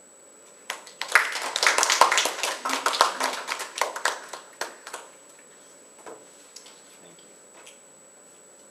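A small audience applauding: a few people clapping, starting about a second in and dying away after about four seconds, with a few stray claps afterwards.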